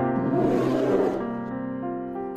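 A polar bear growling, a rough roar lasting a little over a second, over steady background music.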